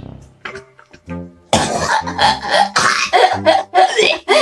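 A man coughing and gagging in disgust, with a woman laughing, over background music. The coughing breaks in suddenly and loudly about a second and a half in, after a quieter stretch of music.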